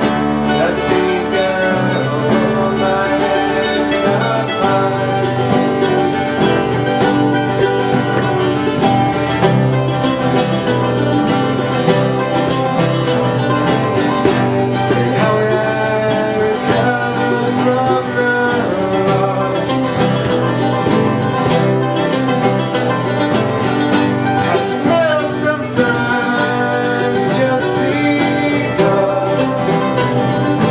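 Acoustic string band playing live in a bluegrass-country style, with mandolin picking over strummed acoustic guitars.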